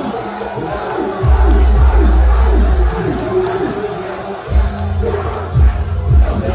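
A large concert crowd shouting and singing along over live music played through a PA, with a heavy bass line that comes in about a second in, drops out around the middle and returns near the end.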